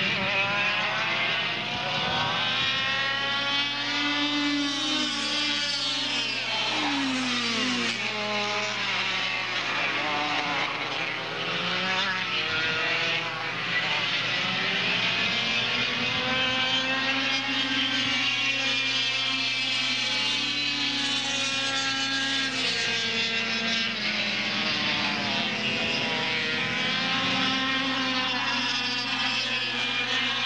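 Several air-cooled two-stroke kart engines running hard, their overlapping high whines rising and falling as the karts accelerate out of corners and pass by. A steady low hum lies underneath.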